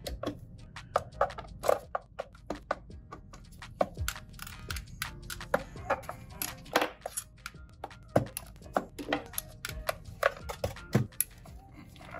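Screwdriver backing screws out of a metal shield: a run of irregular sharp clicks and taps of the bit and screws against sheet metal.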